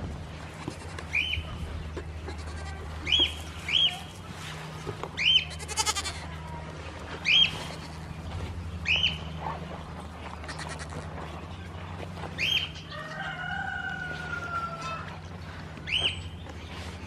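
Goat kids bleating: a series of short, high-pitched calls every second or two, then one longer, slightly falling bleat near the end.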